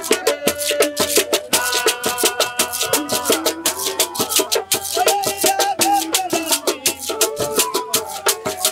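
Live traditional West African music: wooden flutes play a wavering melody over a quick, steady beat of shaken hand rattles and a small hand drum.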